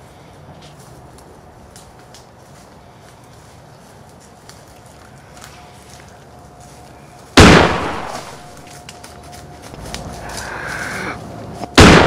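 Two loud gunshot-like bangs about four and a half seconds apart, each dying away over a second or so, laid over quiet outdoor background with faint ticks. Airsoft guns do not bang like this, so these are dubbed-in gunfire sound effects.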